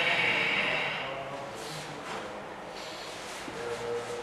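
Kung fu practitioners breathing out forcefully during a form: a long hissing exhale for about the first second, then quieter breathing and movement.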